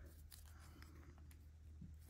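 Near silence: a few faint light clicks of small plastic doll-crib parts being handled and fitted together, over a low steady hum.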